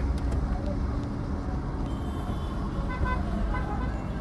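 Steady low road and engine rumble of a car heard from inside the cabin, with a vehicle horn giving a run of short toots near the end.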